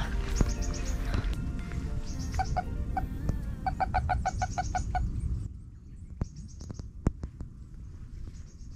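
A small bird singing: a short, quick run of high chirps, repeated about every two seconds. Background music plays under it and fades out about five and a half seconds in.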